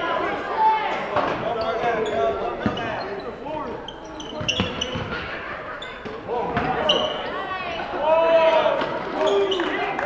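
Basketball game in a gym: players and spectators calling out over each other, the ball bouncing on the hardwood floor and sneakers squeaking in brief high chirps, all echoing in the hall.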